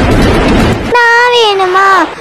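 Loud, dense, noisy intro music cuts off abruptly about halfway through. A high voice takes over, holding one long note that slides downward in pitch.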